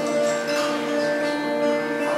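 Acoustic guitar played solo, picked notes and chords ringing on, with new notes struck about half a second in and again near a second and a half.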